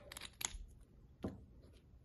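Faint handling sounds of a small glitter jar and paper: a few light clicks in the first half second and one more just past the middle.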